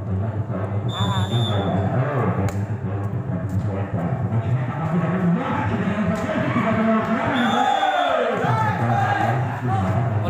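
Spectators talking and calling out over music, with a few sharp knocks of a volleyball being played.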